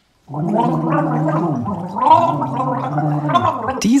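A man's voice making one long wordless gargling sound, starting about a third of a second in and lasting about three and a half seconds, its pitch wandering up and down.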